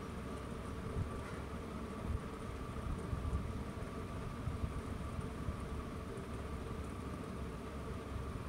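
Steady background hum and hiss with a low rumble and a faint, even whine.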